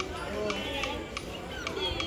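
Indistinct chatter of several people at a gathering, with a small child's voice among them, over a faint regular ticking about three times a second.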